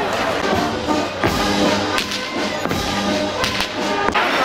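A long whip swung by a child, cracking sharply a few times, with brass-band music and crowd chatter underneath.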